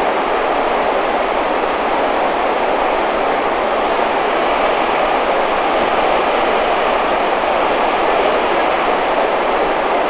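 Steady, loud rush of white water from a mountain torrent pouring across a rocky road, one continuous even noise with no breaks.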